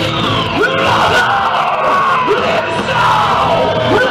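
Death metal band playing live in a club, heard from the crowd: dense distorted guitars with rising swoops about every second and a half, and the vocalist yelling into the mic.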